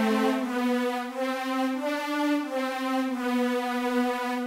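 A synth strings voice from a soloed MIDI track playing one long held note: a harmony part, not the melody.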